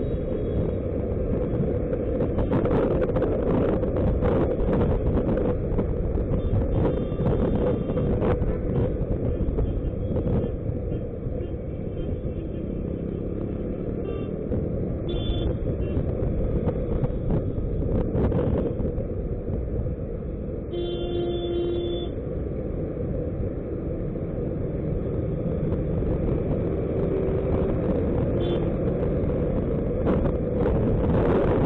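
Steady rumble of wind and road noise from a Suzuki Burgman scooter riding slowly through city traffic. A vehicle horn honks for about a second a little past two-thirds of the way through, with shorter honks before and after.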